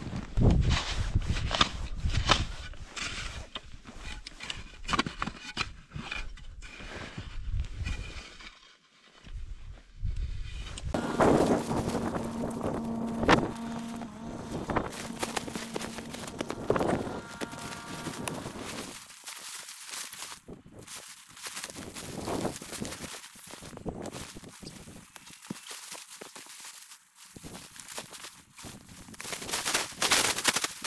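Boots crunching through deep snow in uneven steps, mixed with knocks and rustles of gear being handled. Midway a low steady tone sounds for about five seconds.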